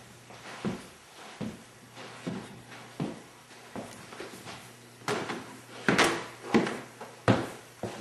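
Footsteps on a floor, about one every three-quarters of a second, with heavier thuds in the second half, over a faint steady low hum.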